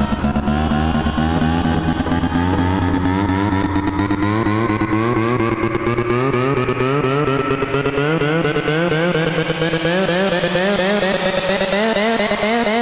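Dirty Dutch house music at a build-up: a buzzy, wobbling synth line climbs steadily in pitch throughout, and the deep bass thins out after the first couple of seconds.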